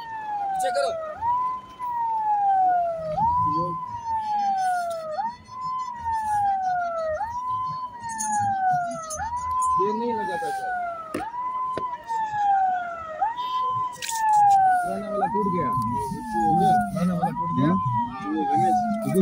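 Electronic siren wailing in a fast repeating cycle, about once a second: each cycle jumps up in pitch and then glides slowly down.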